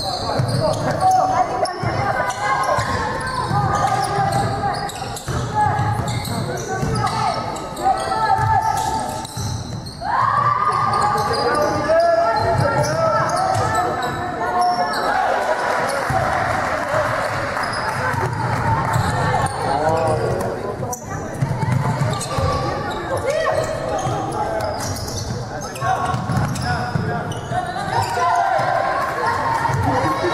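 Basketball bouncing on a hardwood gym floor during a game, with players' voices calling out, echoing in a large sports hall.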